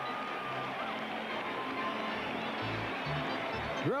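Stadium crowd cheering and shouting, a steady wash of many voices, with a faint high held tone in the first second.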